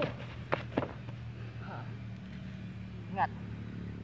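A steady low engine hum runs throughout, with a few sharp thumps in the first second as a body is taken down onto sandy ground.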